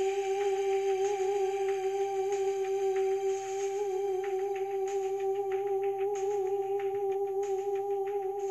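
A single long note held at one steady pitch, humming-like, with a slight waver, over faint light clicking.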